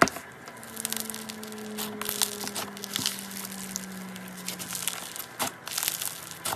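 Foam-bead slime (floam) crackling and popping as fingers press and squish it in a plastic tub: a dense, irregular run of small crunchy crackles. A faint low hum that slowly falls in pitch runs underneath.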